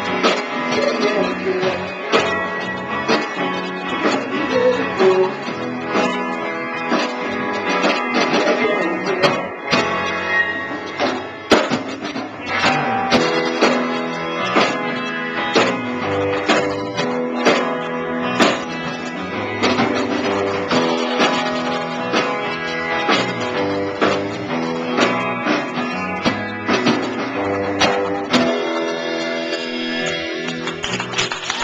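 Live rock band playing: strummed electric guitar over bass guitar and drums, in a steady beat.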